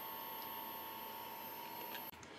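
Quiet, steady background hiss with a faint steady whine, and a faint tick about half a second in; no distinct event.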